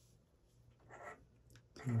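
Faint scratching and light clicks of hands handling wires and a small plastic connector at a scooter controller, with a word of speech near the end.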